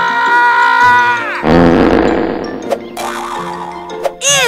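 A high-pitched cartoon scream from the squirrel, held steady, then falling off about a second in. A rough, rattling noise follows, over background music.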